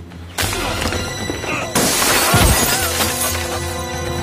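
A crash with glass shattering, a sudden hit about half a second in and the loudest breaking a little under two seconds in, over a dramatic action-film score.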